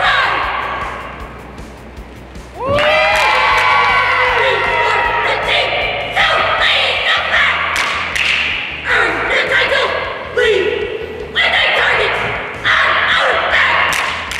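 Cheerleading squad shouting a cheer in unison in short phrases with brief pauses between them, with occasional thuds.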